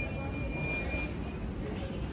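Airport terminal ambience: a steady low rumble with background voices. A thin high tone stops about a second in.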